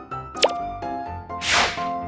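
Light background music with a quick, even run of notes, overlaid by a cartoon pop sound effect about half a second in and a whoosh about a second and a half in, as the end-screen prompts animate in.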